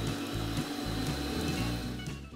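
Electric stand mixer running at a steady speed, its paddle beating creamed butter and sugar with an egg; the motor's steady whine stops near the end.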